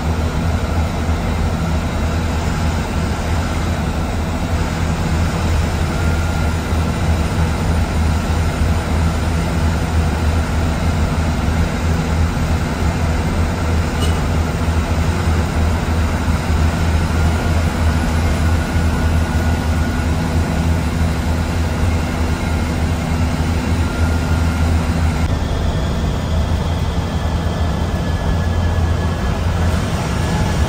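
Cabin noise of a diesel SETC AC sleeper bus cruising at highway speed, heard from the front of the bus: a loud, steady low engine and road drone.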